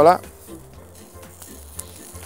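Vegetable slices and pepper strips sizzling faintly on the thick steel griddle plate of a wood-fired barbecue, with a few light clicks.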